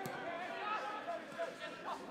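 Faint, distant shouting and calls from players and coaches on a football pitch, heard through the stadium's open-air ambience.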